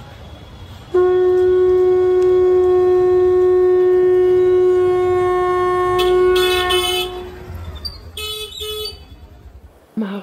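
A conch shell blown in one long, steady note that starts sharply about a second in, holds for about six seconds and then fades. A shorter, brighter blast follows around eight seconds, over a low rumble of street noise.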